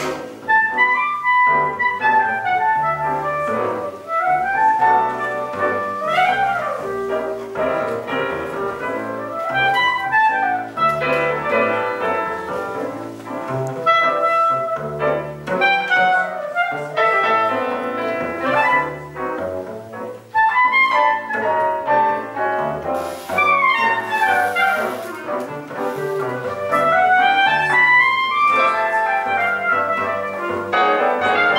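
Clarinet solo with many fast rising and falling runs, accompanied by piano and double bass.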